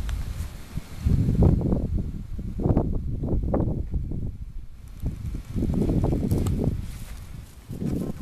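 Wind buffeting the microphone: a low rumble that comes in about three gusts of a second or two each.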